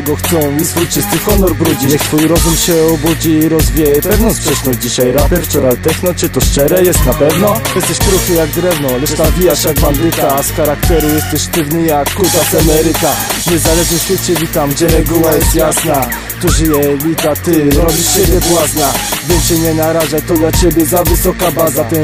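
Polish-language rapping over a hip-hop beat, the vocal delivered continuously in quick lines over steady, regular drum hits.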